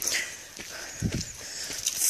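Footsteps on a dirt hiking trail while walking: a few soft thuds about a second apart over a steady hiss.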